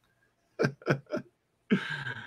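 A man laughing: three short chuckles, each falling in pitch, about half a second in, then a breathy laugh near the end.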